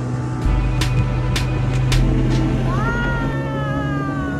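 Speedboat outboard motor running with a steady low drone, with a few sharp slaps in the first two seconds. A high, drawn-out voice call falls slowly in pitch in the last second.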